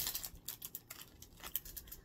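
A packet of Peeps being unwrapped and handled: a light, irregular patter of small clicks and crinkles from the plastic wrapper and the cardboard tray.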